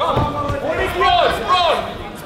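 Men's voices shouting, a run of short calls that rise and fall in pitch, loudest about a second in.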